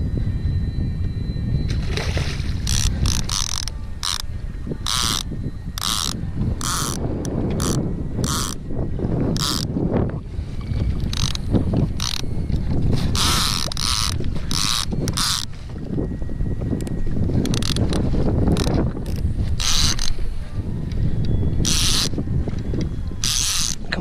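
Large spinning fishing reel working under a fighting fish, in many short, irregular bursts of ratcheting clicks and whirs, over a steady low rumble of wind on the microphone.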